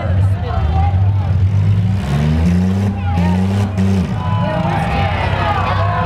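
Demolition derby car engine running loudly, its note climbing about two seconds in and falling back around four seconds, with people talking over it.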